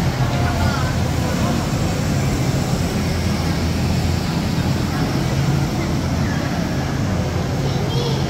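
Electric blower fan of an inflatable running steadily, a continuous low hum with a rushing air noise, keeping the inflatable pumpkin inflated. Crowd voices chatter underneath.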